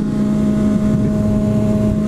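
Motorcycle engine running at a steady speed while riding, under a steady rush of wind noise.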